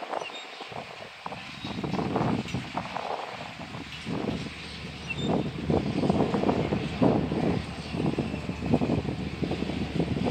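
Freight cars of a manifest train rolling past, their wheels clicking and clattering on the rails in an uneven rhythm, louder from about four seconds in.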